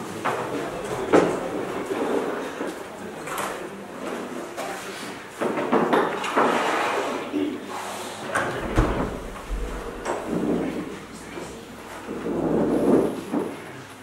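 Scattered knocks, bumps and scraping in a hall, typical of set pieces being moved about on a darkened stage, with low murmuring voices and a low rumble for a few seconds in the second half.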